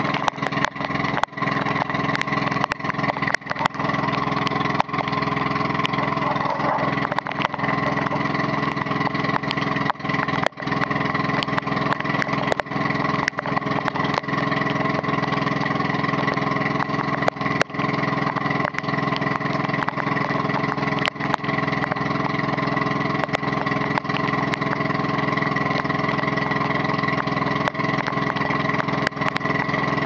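Motorized outrigger boat's engine running steadily at cruising speed, a continuous mechanical drone. Frequent irregular sharp taps of rain and spray hitting the camera ride over it.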